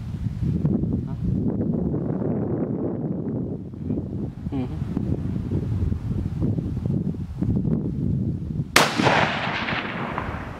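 A single 6.5 Creedmoor hunting rifle shot near the end, fired at a doe: a sharp crack followed by an echo that rolls on for over a second.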